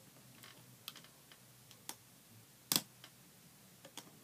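Scattered light clicks and snaps of a crochet-style hook and rubber bands being worked on a plastic Rainbow Loom, about five of them, the sharpest one about three-quarters of the way in.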